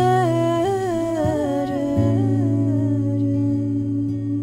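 Music: a wordless hummed vocal melody sliding between notes over a held low bass drone. The voice fades out about three seconds in, leaving the drone sounding.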